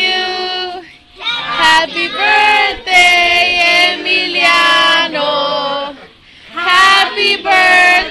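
A group of women and children singing together in long held phrases, with two short breaks between lines, about a second in and about six seconds in.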